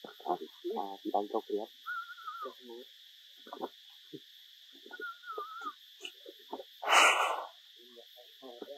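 A steady high drone of forest insects, with scattered snatches of low voices over it. A brief loud burst of noise comes about seven seconds in.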